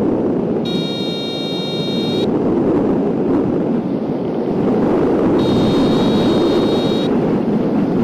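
Airflow rushing over a wing-mounted camera's microphone on a hang glider in flight at about 40 km/h. Twice a steady electronic variometer tone sounds for about a second and a half, while the glider is sinking at about 2 m/s.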